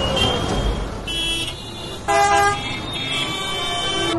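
Busy city street traffic with vehicle horns honking: a short honk about a second in, then several horns of different pitches sounding together from about two seconds in.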